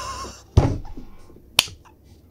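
A heavy thump about half a second in, followed about a second later by a single sharp, snap-like click.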